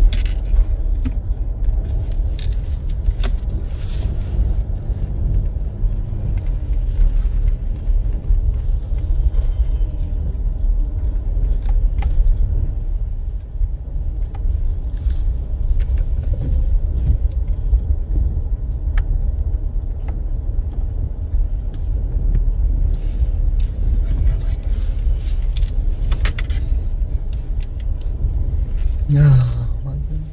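Car driving on a snow-covered road, heard from inside the cabin: a steady low rumble of tyres and engine, with scattered light clicks and rattles.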